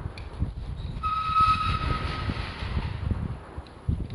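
Outdoor street sound with wind rumbling on the microphone. About a second in, a distant horn-like tone holds one steady note for about a second and a half.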